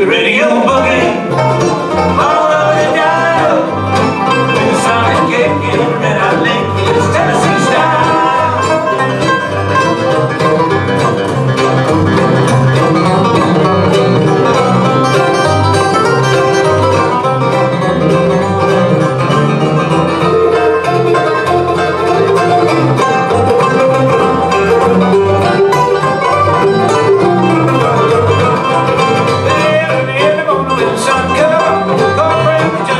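A bluegrass band playing live and up-tempo: five-string banjo, mandolin and acoustic guitar over a steadily pulsing electric bass.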